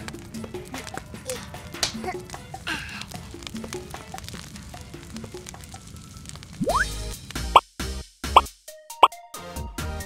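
Cartoon sound effects for a toy hose spraying water: a quick run of small plops and drips over light children's background music. About seven seconds in comes a rising whistle, then three short upward 'bloop' glides.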